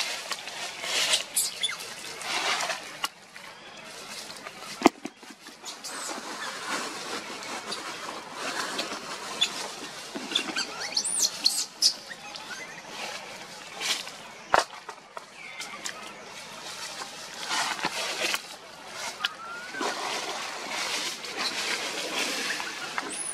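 Dry leaf litter rustling and crackling as long-tailed macaques shift about on the forest floor, with two sharp clicks and a few brief high-pitched squeaks about halfway through.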